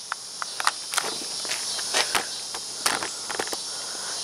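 Insects chirring steadily in a high, even band, with scattered light clicks and scuffs of footsteps on concrete.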